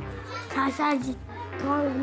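A small boy's high voice in drawn-out, wavering "oo" sounds, half-sung, over quiet background music.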